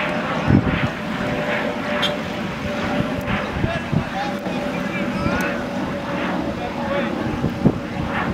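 Indistinct voices chattering over a steady background hum, with a couple of sharp knocks, one early and one near the end.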